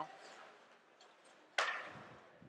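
Faint arena background noise, then about one and a half seconds in a single sharp knock that dies away over about half a second.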